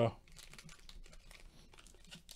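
Foil trading-card pack crinkling in the hands as it is picked up and opened: faint, irregular rustling.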